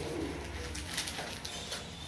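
Pages of a book, apparently a Bible, being turned, with soft paper rustles about a second in and again near the end, over a steady low hum. In the first second there is a low pitched murmur that this material cannot identify.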